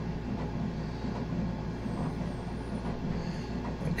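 A steady, low, machine-like background hum and rumble, with no distinct events.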